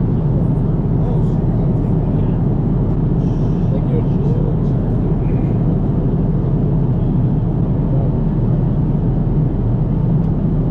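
Airliner cabin noise in flight: a loud, steady low rumble of engines and rushing air that never changes.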